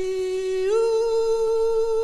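One long sung note held on a single pitch, stepping up to a higher held note about two-thirds of a second in, from a 1950s doo-wop vocal recording.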